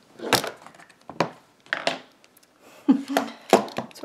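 Handling noise from a phone camera being repositioned on a broken tripod: about six irregular knocks and clatters over four seconds.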